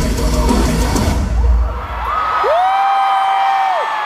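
A heavy metal band's loud live music stops dead about a second and a half in. It is followed by two long, high-pitched held yells from the arena crowd, each rising, holding and falling away near the end.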